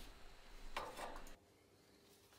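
Faint handling noise: a brief rub or rustle about a second in, then the sound cuts off suddenly to near silence.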